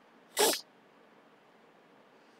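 A single short, sharp breath noise from the man, such as a quick sniff or intake of breath, lasting about a quarter of a second a little way in. Otherwise near silence.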